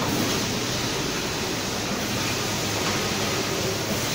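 Steady mechanical noise of an automatic bottle filling and packaging line running, an even wash of sound without a distinct rhythm.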